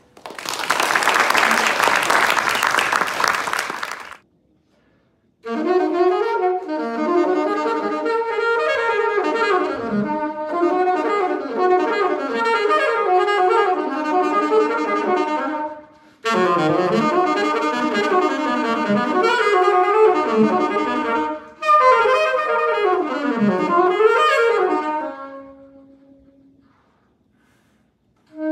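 Audience applauding for about four seconds. After a brief gap, a solo saxophone plays a melody unaccompanied, in three phrases with short breaks between them.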